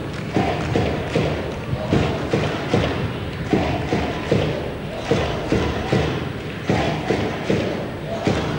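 Fans in the stands beating a drum in a steady rhythm, about two to three beats a second, with the crowd chanting along as they cheer their team on.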